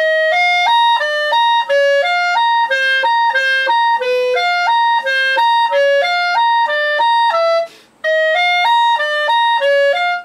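Clarinet played forte: a quick run of notes leaping back and forth between lower and higher pitches, with a brief break about eight seconds in before the phrase resumes.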